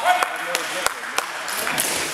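Indistinct voices echoing in a large sports hall, with a few sharp clicks or knocks spaced about a second apart.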